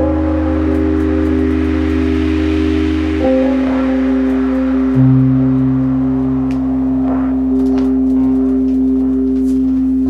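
Elektron Syntakt drum computer and synthesizer playing a slow ambient piece built only from its SY Bits machine. Sustained synth drones sit over a low bass, and the chord shifts about three seconds in and again at five seconds. Faint high ticks come in over the last few seconds.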